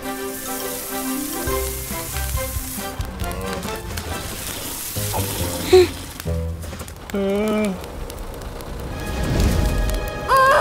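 Cartoon sound effect of water hissing out of a fire hose in a spray, loudest in the first three seconds, over light background music.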